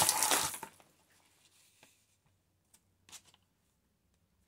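A heap of small shiny craft leaves being swept aside by hand, a rustling clatter that dies away within the first second. After it comes near silence, with a few faint clicks and one short rustle about three seconds in.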